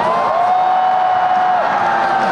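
A voice holds one long drawn-out call for about a second and a half, rising slightly at the start and then steady, over stadium crowd noise; a second shorter call starts near the end.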